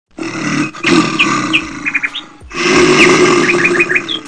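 Two long, loud animal roars, one after the other, with a short break about halfway.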